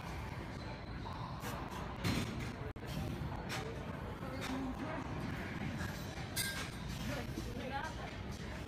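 Gym background of indistinct voices and faint music, with a sharp knock about two seconds in and a few lighter clicks later.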